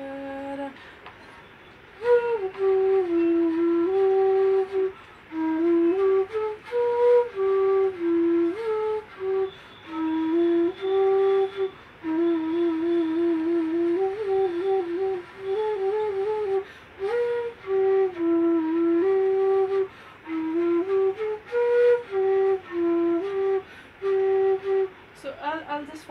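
Bansuri (bamboo transverse flute) playing a slow melody from raga Brindavani in short phrases separated by brief breaths, with a few quick trills in the middle. The flute comes in about two seconds in and stops just before the end, where a woman's voice takes over.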